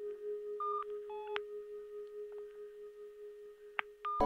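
Sparse, dark electronic music: a steady low drone under a short figure of high electronic beeps at stepped pitches about a second in, and a single sharp click near the end.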